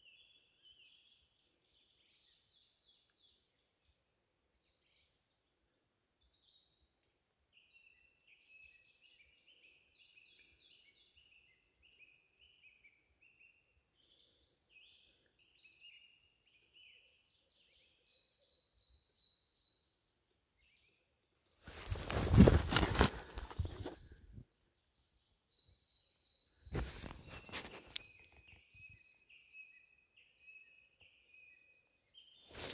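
Faint birdsong, chirps and trills coming and going. Two loud bursts of rustling handling noise close to the microphone come near the end, each about two seconds long.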